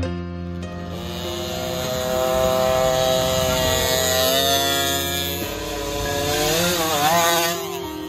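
KTM 50 SX mini motocross bike's single-cylinder two-stroke engine running and revving. Its pitch climbs through the middle and wavers with the throttle near the end, under background music.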